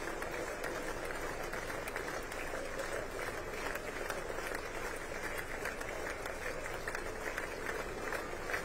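Steady applause from a large crowd of lawmakers in a big hall, many hands clapping at once, with a murmur of overlapping voices beneath it.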